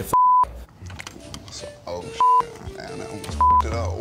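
Three short, loud censor bleeps, each a steady high beep about a third of a second long, covering a contestant's spoken words. Quieter speech and background music sit between them.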